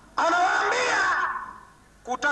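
A man's voice in one long drawn-out call, starting suddenly, rising then falling in pitch, and fading away with echo.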